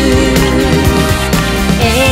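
Japanese pop song, full band playback: held melody notes over drums.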